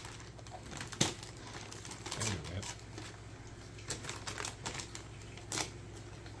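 Gift-wrap paper crinkling and crackling in short, scattered bursts as it is handled and torn, with a sharper crackle about a second in. A brief soft voice sound comes a little after two seconds in.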